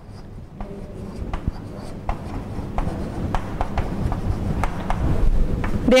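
Chalk writing on a blackboard: a string of short taps and scrapes as the words are written, over a low rumble that grows louder toward the end.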